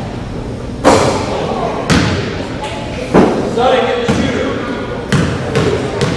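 Basketball bounced on a hardwood gym floor, six sharp thuds roughly a second apart, as a player dribbles at the line before a free throw. Voices carry in the hall between the bounces.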